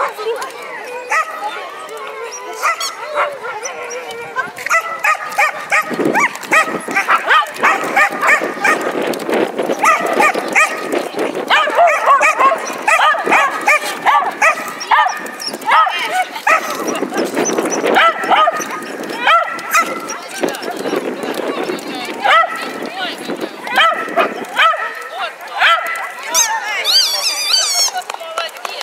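A black-and-tan terrier barking over and over in short barks, demanding a ball held up out of its reach, with people talking in the background.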